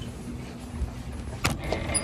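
Handling noise from a camera and its on-camera shotgun microphone being carried while walking, with the rustle of things held in the arms and one sharp knock about a second and a half in.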